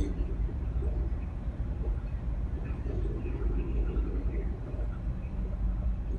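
Steady low rumble of city street traffic, heard from a car driving slowly along a busy street.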